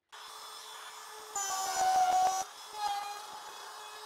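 Cordless palm router running with a steady whine, cutting a groove into three-quarter-inch plywood along a straight edge; it grows louder for about a second partway through as the bit bites into the wood, and swells briefly again near the end.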